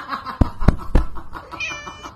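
Three sharp thumps in the first second, then a kitten's short, high-pitched mew near the end.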